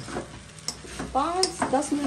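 Steel spatula stirring and scraping food in a steel kadhai over a low sizzle of frying, with a few sharp clicks of metal on the pan.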